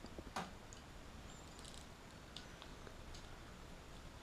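Faint, sparse clicks and scraping ticks of a small hand cutting tool working the outer jacket of double-braided RG214 coaxial cable, the clearest click shortly after the start, over quiet room tone.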